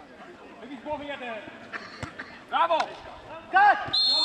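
Men shouting across a football pitch, with two loud calls near the end. A single sharp thud about halfway through, like a ball being kicked.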